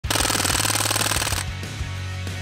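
Crosman AK1 CO2 BB rifle firing one full-auto burst of rapid shots lasting a little over a second, ending sharply. Intro music with a low bass line plays under it and carries on after.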